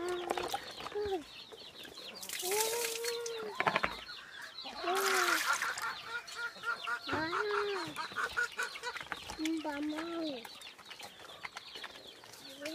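Hens clucking, with about six drawn-out, rising-and-falling calls every couple of seconds over quicker cackling, and two short bursts of noise about three and five seconds in.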